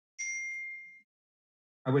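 A single electronic chime: one clear ding with two ringing pitches that fades away within about a second, the kind of notification tone a video-call app plays.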